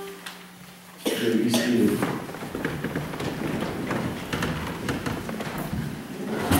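The last organ chord dies away, then about a second in a congregation starts shuffling and rustling in the wooden pews as people settle, with low murmured voices.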